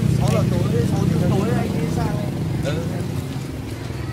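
A motor vehicle's engine running with a steady low hum that slowly fades, under several people talking.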